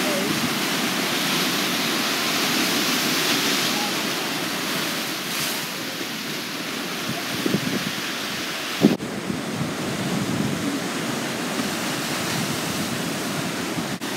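Ocean surf breaking and washing over the shoreline rocks: a steady rush of white water, a little louder in the first few seconds. There is a brief thump about nine seconds in.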